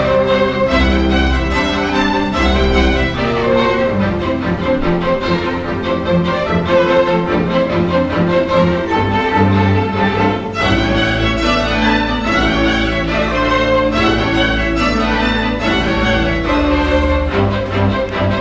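String orchestra playing: violins, cellos and a double bass. Short low bass notes repeat about once a second in the opening seconds, and a long low note is held from about ten seconds in.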